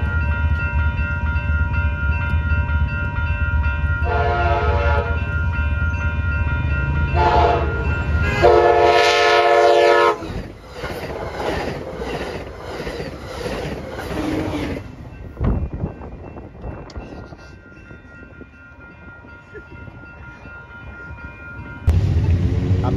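Amtrak passenger train passing through a grade crossing at speed: the diesel locomotive's steady low rumble with three horn blasts, about 4, 7 and 8.5 seconds in, the last the longest and loudest. The double-deck cars then roll by with a rhythmic wheel clatter that fades, over the steady ringing of the crossing bells.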